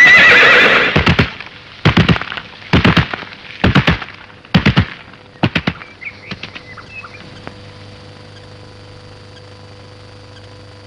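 A horse whinnying at the start, then heavy hoofbeats in loud clusters about once a second for some five seconds, fading to a low steady hum.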